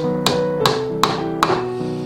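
Small ball-peen hammer tapping tiny nails into a brass trim plate on a piano's oak lid: four light, sharp taps about 0.4 s apart, heard over background music.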